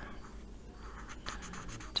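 Marker tip scratching faintly across paper in short colouring strokes.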